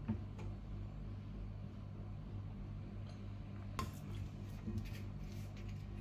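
Quiet room tone with a steady low hum, and a few light clicks in the second half from a small bottle being handled.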